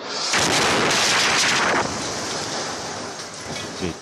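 An explosion: a sudden, loud blast about a third of a second in that stays at full strength for about a second and a half, then settles into a lower, steady rush that lasts until near the end.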